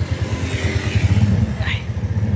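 Auto-rickshaw engine running close by, a low, rapid pulsing that grows a little louder about halfway through.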